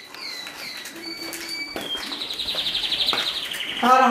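A small songbird singing: a few short high chirps and falling whistles, then a fast, steady high trill from about two seconds in.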